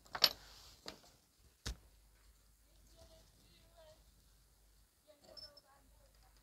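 A few sharp clicks and taps from a soldering iron and solder wire being picked up and handled over a circuit board, the first, about a quarter second in, the loudest.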